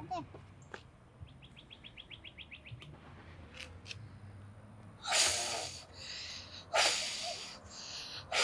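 A child blowing on a dandelion seed head: two breathy puffs, about five and seven seconds in. Earlier a bird gives a quick trill of about a dozen rapid chirps.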